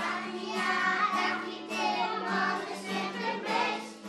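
A group of young children singing together in chorus.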